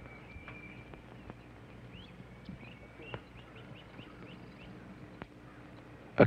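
Faint woodland birdsong: scattered short chirps, with a quick run of about eight short rising notes in the middle, over a low steady hum.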